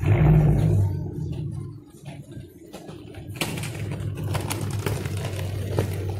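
Car engine running at the street: a loud low rumble at first that eases within about two seconds, then a steady low hum, with scattered light clicks.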